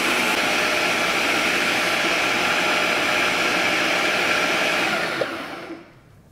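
Ninja Auto-iQ kitchen system's motor running steadily, its blades grinding cheese with a splash of milk in the food-processor bowl, then winding down and stopping near the end.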